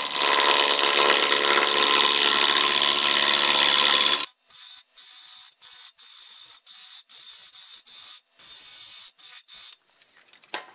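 Bowl gouge cutting into a spinning four-piece walnut blank on a wood lathe: a loud, harsh, even cutting noise that stops suddenly about four seconds in. After that there is a much quieter sound that cuts in and out.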